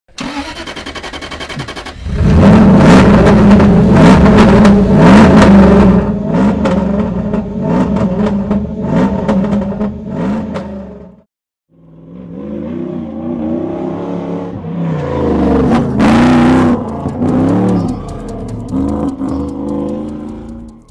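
Bowler Nemesis rally car engine revving hard, its pitch rising and falling as it is driven. The sound breaks off sharply about eleven seconds in, then resumes with more rising and falling revs.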